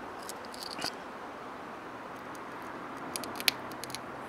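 Small objects being handled on a work surface: a few light clicks and taps, with one sharper click about three and a half seconds in, over a steady background hiss.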